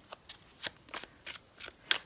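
A tarot deck being shuffled by hand: a quick run of short, light card clicks, about three a second.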